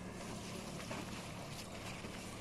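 Outboard motor on a rigid inflatable boat running at steady speed as the boat moves off across the water, a low even hum.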